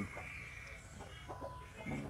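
Faint chicken clucking in the background: a few short, scattered calls over low ambient noise.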